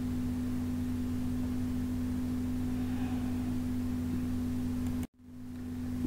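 A steady low electrical hum holding a constant pitch. It cuts out suddenly about five seconds in, then swells back up just before the end.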